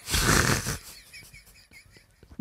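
A person's short, breathy laugh close to the microphone, lasting under a second, then low background noise.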